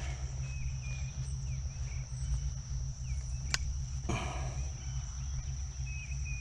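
Insects droning outdoors in one steady high-pitched note over a low rumble, with a single sharp click about three and a half seconds in.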